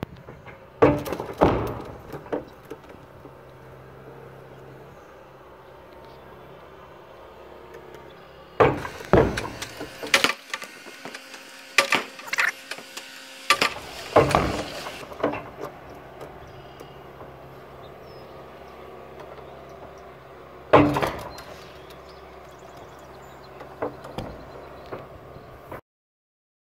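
Diesel excavator running steadily while its bucket strikes a concrete silo, giving repeated bangs and cracks of breaking concrete, in clusters, the loudest near the start and about two-thirds of the way through.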